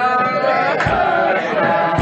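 Male voices singing a Hasidic niggun, a melody held in long gliding notes, with a few short low thumps.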